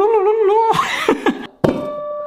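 A man's voice humming a held, slightly wavering note, then a few sliding vocal noises. A click about a second and a half in is followed by a steady held tone.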